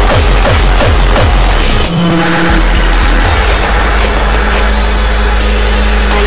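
Hardcore techno in a DJ mix. A fast, pounding kick-drum beat cuts out about two seconds in, and a sustained low drone without the beat takes over.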